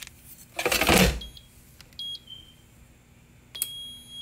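Air fryer basket clattering as it is pushed into place, then the air fryer's touch panel beeping as it is set and switched on: two short beeps, then one longer beep near the end.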